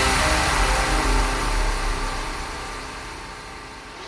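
Electronic dance track in a beatless breakdown: a sustained wash of noise over a deep bass drone and a few held tones, fading steadily.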